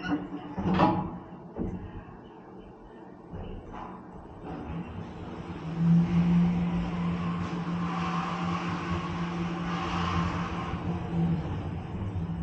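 Passenger lift: a knock about a second in, then a steady low hum with a swelling hiss as the car travels, both stopping shortly before the end.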